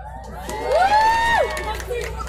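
A group of young voices shouting one long drawn-out call together, rising, held for about a second, then dropping off.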